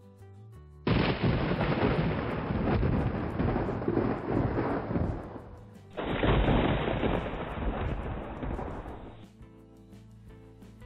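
Thunder: two loud thunderclaps. The first starts suddenly about a second in and the second about six seconds in, and each dies away over three to four seconds.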